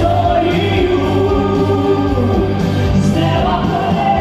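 A female and a male vocalist singing together live into microphones over an amplified instrumental accompaniment, a Christian gospel-style pop song.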